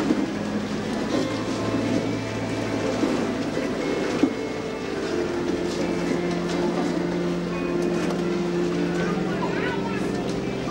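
A woman's voice over a microphone and PA, speaking or praying, over background music of long held chords that change about halfway through.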